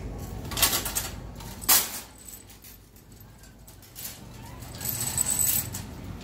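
Wire-basket shopping carts clanking as one is pulled free from a nested row: two sharp metal clanks in the first two seconds, then a metallic rattle near the end.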